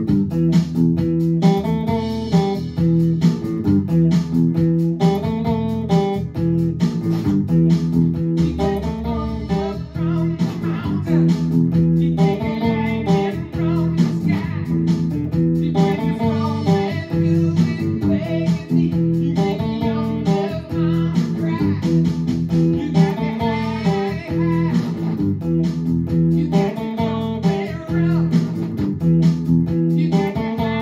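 Electric guitar played in continuous melodic phrases of picked notes over a steady held low note.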